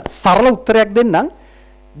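A man's voice through a wired microphone and PA, breaking off about two-thirds of the way in. In the pause a steady electrical mains hum from the amplification is left.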